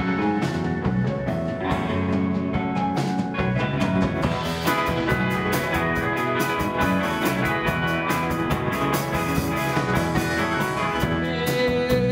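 Live rock band playing a song: electric guitars, drum kit and keyboards together, with steady drum and cymbal hits.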